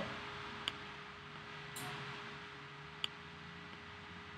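Quiet room tone with a steady faint hum and a few soft clicks at a computer: one a little under a second in, a short hiss near two seconds, and a sharper click about three seconds in.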